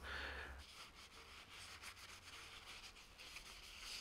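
Faint rubbing of a panel-wipe cloth over a sanded, painted motorcycle frame, wiping off sanding dust, a little louder in the first half second.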